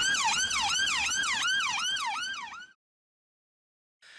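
Ambulance siren sound effect: a fast yelp rising and falling about three times a second. It fades and stops about two-thirds of the way through.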